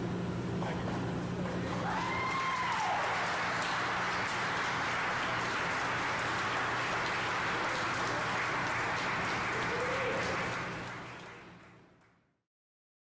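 Hand applause from a group of people, with a few voices, over a steady low electrical hum. It fades out near the end.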